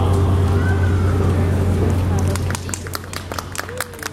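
An a cappella choir's final held chord ends, leaving a steady low hum that stops about two and a half seconds in. A few voices call out and scattered hand clapping from listeners starts about two seconds in and grows.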